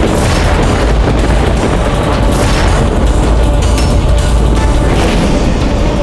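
Dramatic background score dominated by deep, booming low drum hits and a heavy bass rumble, loud throughout.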